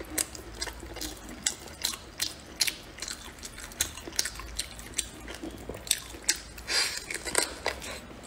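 Wet, sticky clicks and smacks of eating spicy braised pork trotter by hand: the mouth chewing while the fingers pull sauce-coated skin and meat apart. The clicks come irregularly, a few a second.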